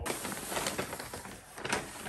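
Crinkly rustling of packaging and fabric as a garment is pulled out of a gift bag and unfolded, a dense run of short crackles.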